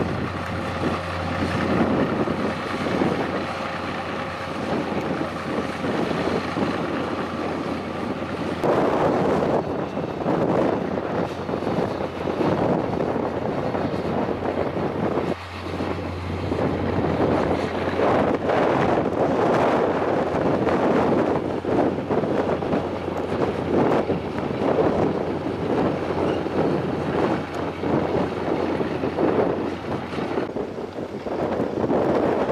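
Daewoo tracked excavator's diesel engine running steadily with a held whine for about the first nine seconds, then wind gusting on the microphone.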